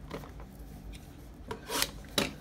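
Shrink-wrapped trading card box being slid and handled: a light knock about a second and a half in, then a short scraping rub near the end, the loudest sound.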